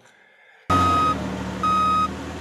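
Box truck's reversing alarm beeping: two long single-tone beeps about a second apart, starting a little under a second in, over the low steady hum of the truck's engine.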